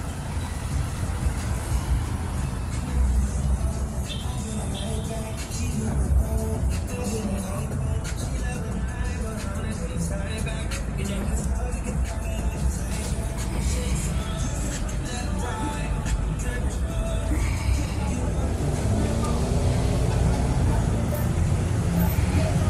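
City street sound: a steady rumble of road traffic and passing cars, with snatches of distant voices and music.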